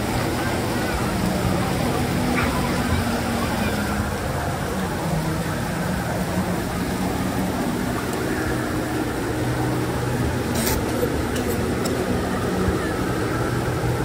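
Steady rush of splash-pool water features with a background of crowd voices, and a few brief sharp sounds about ten to eleven seconds in.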